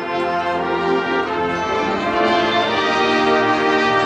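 High school marching band playing, brass leading: the brass comes in loudly right at the start and holds full, sustained chords.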